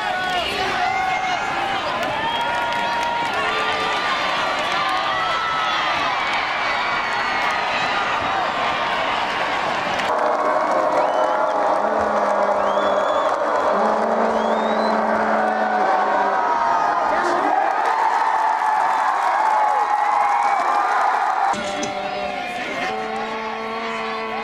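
Crowd at a high school football game: many voices shouting and cheering over one another. The sound changes abruptly twice, about ten seconds in and again near the end.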